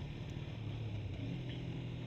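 A 1997 Kawasaki ZZR250's parallel-twin engine running at a steady cruise, a low even hum under a haze of wind and road noise.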